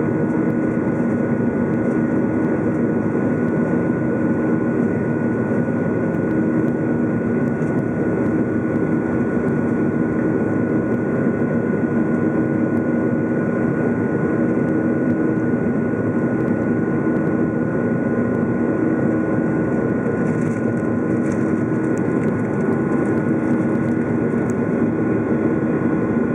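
Cabin noise of a Boeing 737-800 climbing out, heard from over the wing: its CFM56-7B turbofans running steadily at climb thrust, a constant rush of air with a few steady hum tones underneath.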